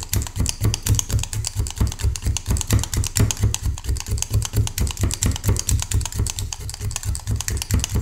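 Seven-needle felting tool stabbing rapidly and repeatedly into layered wool on a bristle brush mat, about five even strokes a second, each a soft thump with a light click.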